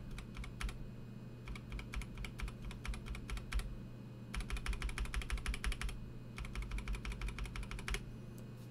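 An unlubed NovelKeys Cream linear switch in an IDOBAO ID80 mechanical keyboard, one key pressed rapidly again and again in quick runs of clicks with short pauses between them. Unlubed, the switch keeps a scratchy, pingy noise from its stem slider and spring.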